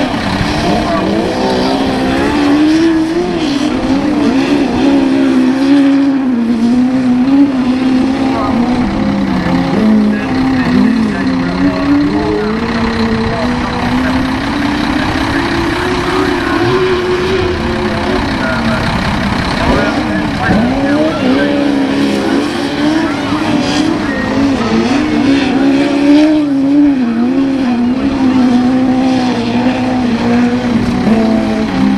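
Several autograss racing cars' engines running hard on a dirt track. Their pitch rises and falls constantly as the drivers rev, lift and accelerate around the course.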